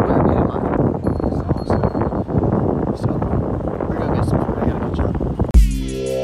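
Wind buffeting the microphone over outdoor town ambience. About five and a half seconds in, electronic music with a heavy bass beat starts abruptly.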